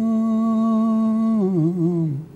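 A man singing a wordless phrase, humming-like: one long steady note that, near the end, wavers and slides downward in pitch.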